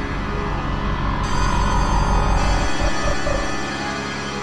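Electronic synthesizer music in a microtonal tuning (12 notes of 91-EDO), played on a virtual CZ synthesizer: layered sustained tones that swell louder in the middle with a heavy deep bass, which drops away near the end.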